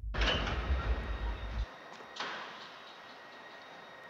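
London Underground train at a platform: a low rumble that cuts off about one and a half seconds in, then a sudden rush of noise from its sliding doors that dies away over a second or so.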